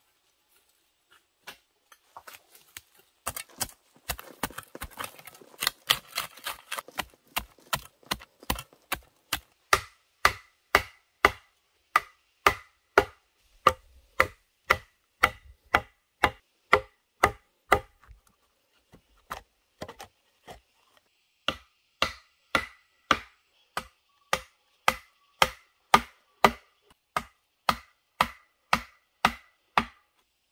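Machete chopping bamboo: a steady run of sharp strikes, about two a second, with a short pause about two-thirds of the way through.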